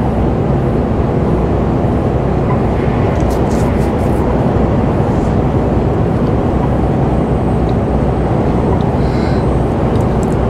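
Steady engine drone and tyre-on-road noise heard inside the cab of a Mercedes-Benz truck cruising on the motorway at about 89 km/h.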